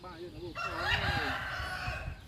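A rooster crowing once: a single long call lasting about a second and a half that rises and then falls away.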